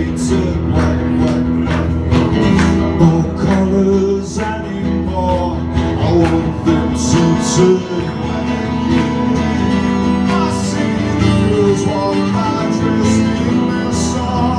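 Live acoustic guitar strummed in a steady, driving rhythm, played through a PA in a small room.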